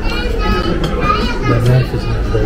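A child's high-pitched voice over background music, with a deeper voice briefly near the end.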